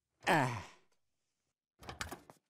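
A man's strained grunt of effort, falling in pitch, as he pushes a heavy scooter. Near the end come a few short light knocks.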